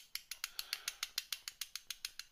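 Rapid light tapping of an acid brush's metal handle against the wheel of a 1:64 diecast toy car, about ten even ticks a second. The tapping works graphite lubricant into the wheel hub and axle.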